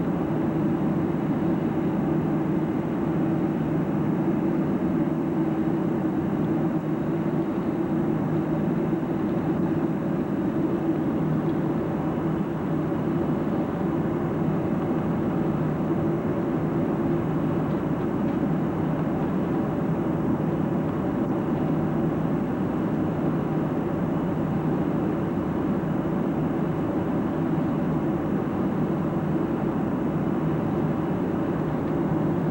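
Steady cabin noise of a twin-engine jet airliner in cruise, heard from inside the cabin: the even drone of the jet engines and rushing air, with a low hum running through it.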